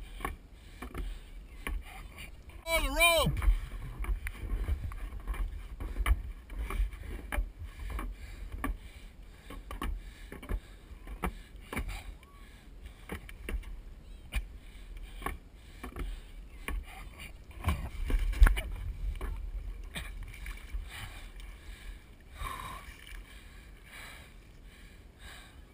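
Lake water lapping and sloshing around a floating skier's wooden water skis, with many small splashes and knocks on the camera and a low rumble underneath. A short gliding voice-like call sounds about three seconds in, and a fainter one near the end.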